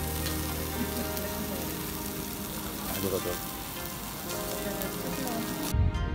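Meat sizzling on a wire-mesh grill over charcoal at a yakiniku table, a steady frying hiss. It cuts off sharply near the end, giving way to soft music.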